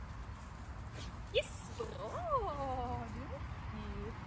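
A sharp click, then a woman's high, sing-song voice calling to a puppy in long rising-and-falling tones, without clear words.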